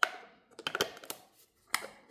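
Hard plastic parts of a wearable breast pump clicking and knocking as they are handled and snapped together: a sharp click at the start, a few lighter clicks about a second in, and another near the end.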